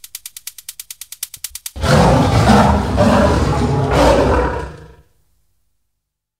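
Closing seconds of an electronic body music track: a fast, even clicking pulse of about ten clicks a second, then a loud growling roar sample for about three seconds that fades out, leaving silence.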